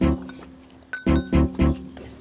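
Background music: plucked-string notes struck in two quick runs of three over a steady low note.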